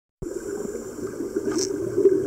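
Scuba divers' exhaled regulator bubbles heard through an underwater camera: a steady bubbling churn that starts abruptly just after the start.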